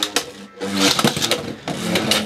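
Two Beyblade X tops, Cobalt Dragoon 5-60G and Dran Buster 1-60A, spinning and clashing in a clear plastic Xtreme stadium: a quick run of clicks and knocks over a steady whirring hum.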